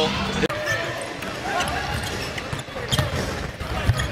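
Basketball being dribbled on a hardwood court during live play, a few separate bounces, over the murmur of voices in the gym.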